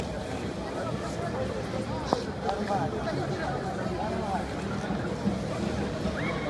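Indistinct high children's voices and chatter over the steady background hum of an indoor ice rink, with one sharp knock about two seconds in.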